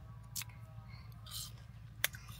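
Faint chewing of a bitten star fruit, with one small click about half a second in.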